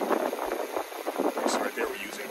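A man talking over the e-bike's rear hub motor turning the unloaded, lifted rear wheel with little power drawn.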